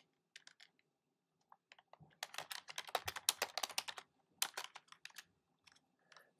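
Typing on a computer keyboard: a few scattered keystrokes, then a quick run of typing about two seconds in and a shorter run after a brief pause.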